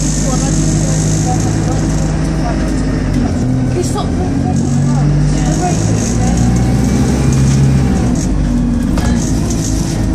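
Diesel engine and drivetrain of a 2005 Stagecoach bus heard from inside the passenger saloon as it drives along, with road noise. The engine note steps up and down in pitch a few times as it accelerates and changes speed.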